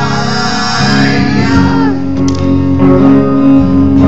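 Live rock song on an acoustic guitar and an electric guitar, tuned down to drop C#, with a man singing a long, drawn-out "Hi-aaaye! Hiii-ee-aye!" over it.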